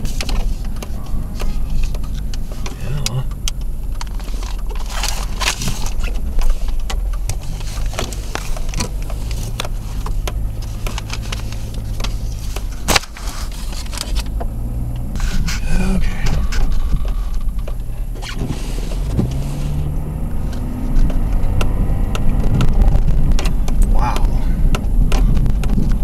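Car engine and tyre rumble heard inside the cabin while driving slowly through fresh snow, with scattered clicks and a sharp knock about halfway through.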